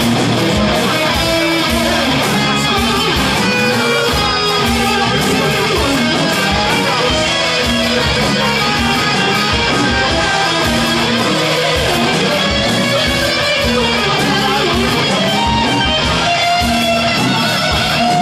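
Heavy metal band playing live: distorted electric guitar over bass and drums, loud and continuous.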